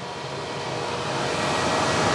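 Cooling fan of a Bluetti AC200MAX portable power station running steadily, a rush of air with a faint hum that grows louder. The fan has kicked on because the unit is supplying a heavy load of about 1,870 watts.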